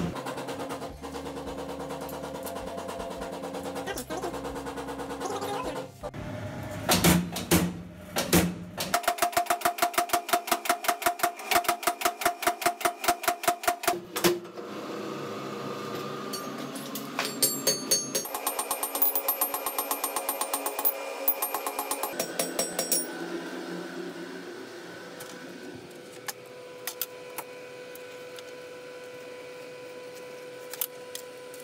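Blacksmith's power hammer striking metal in two quick runs of blows, several a second, with music running underneath.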